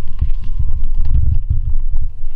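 Camera handling noise as the camera is picked up and carried: irregular low thumps and rumbles, with faint clicks.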